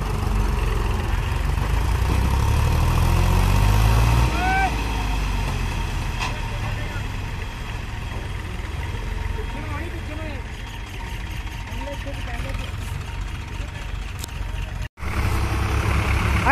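HMT 3522 diesel tractor engine labouring under the weight of a fully loaded trolley in a soft field, front wheels lifting. Its revs climb for the first four seconds, then fall away, and it runs on at a lower, steadier pitch. A short shout comes about four seconds in, and the sound cuts out for an instant near the end.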